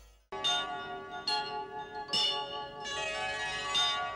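Music fades out, then after a brief silence a bell-like chime jingle starts. It has about four ringing struck notes over a held low tone.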